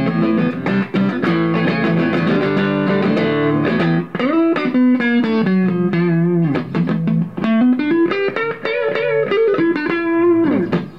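Tele-style electric guitar with single-coil pickups, played clean through a guitar amp. Chords are strummed for the first four seconds, then come single-note lines with string bends.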